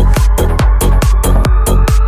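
Progressive trance dance music with a steady, driving kick drum and crisp hi-hats, and a synth tone slowly rising in pitch.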